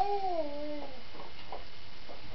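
A cat giving a single meow that falls in pitch and lasts under a second.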